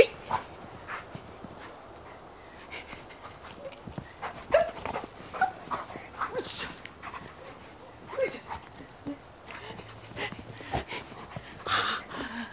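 A golden retriever making short, scattered vocal sounds as it plays and leaps in snow, with light crunching in the snow between them.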